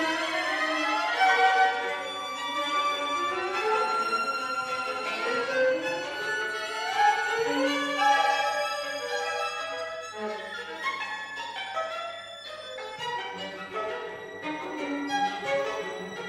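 A string quartet of two violins, viola and cello playing, with several rising, gliding lines in the upper parts over the first half. It gets quieter from about ten seconds in, where a low note is held for a few seconds.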